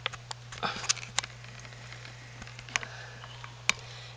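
Light handling noise: a few scattered sharp clicks and soft rustles as a camera is moved over a taped cardboard box, over a steady low hum.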